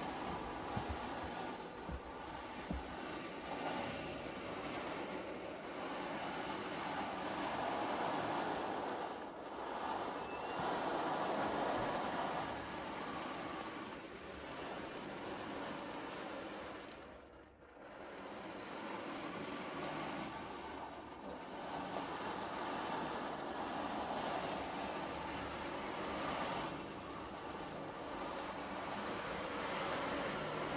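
Meinl 22-inch sea drum: beads rolling across the drumhead in slow swells, a surf-like wash that rises and falls and briefly dies away a little past halfway.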